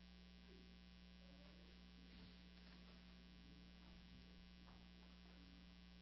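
Near silence with a steady low electrical hum.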